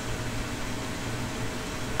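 Steady background noise in a small room: an even hiss with a faint low hum, with no distinct events.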